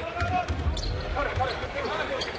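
Basketball dribbled on a hardwood court: scattered sharp bounces over the steady murmur of an arena crowd.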